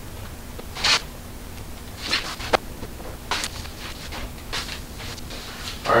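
A string of brief soft rustles and rubs from hands handling a carbon-fibre spoiler on a car's trunk lid, with a sharp little click about two and a half seconds in.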